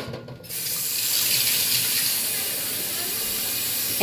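Steady hissing sizzle from a simmering pot of chicken and dumplings as a watery thickening mixture is poured in, starting about half a second in.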